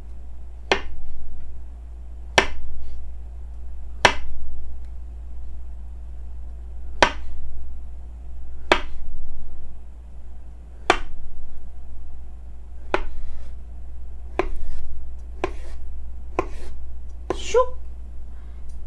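Chef's knife slicing a ripe, peeled avocado thinly on a wooden cutting board. Each cut ends in a sharp knock of the blade on the board, about a dozen knocks at irregular gaps of one to two seconds.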